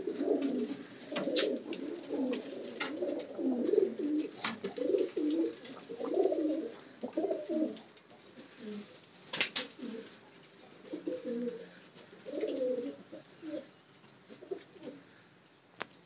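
Qasuri jaldar pigeons cooing in many short, low, warbling phrases that overlap and are busiest in the first half. A few sharp clicks come between them, the loudest about nine and a half seconds in.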